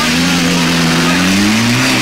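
Ford Escort Cosworth rally car's turbocharged four-cylinder engine running at raised revs, the note sagging slightly and then climbing again near the end.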